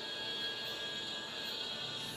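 Background music with sustained, held tones.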